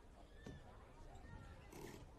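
Near silence: faint open-air background with distant, indistinct voices and a brief burst of hiss near the end.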